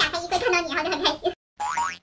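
A voice speaking, then near the end a short cartoon "boing" sound effect with a wavering pitch.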